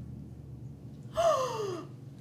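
A woman's voiced gasp of surprise, a single exclamation that falls in pitch, a little over a second in, over quiet room tone.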